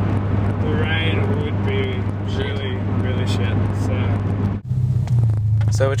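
Steady low drone of a car driving, heard from inside the cabin, with faint voices over it. The drone breaks off briefly about four and a half seconds in and comes back a little higher, and speech starts near the end.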